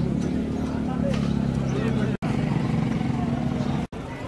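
An engine running steadily with a low, even hum, with market voices in the background.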